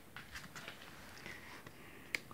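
Faint rustling and a few soft ticks over quiet room noise, from a phone camera being handled and swung about.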